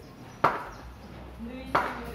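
Cricket bat and ball: two sharp wooden knocks just over a second apart.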